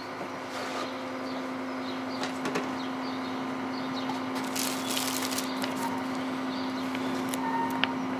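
Plastic packaging bags crinkling and rustling as they are handled, loudest in a short spell around the middle, with a click near the end, over a steady low hum.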